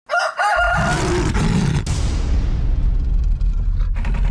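Intro sound effects: a short, high, wavering crow-like cry over the first second, then a low, steady rumbling whoosh whose hiss fades away, with a sharp click partway through.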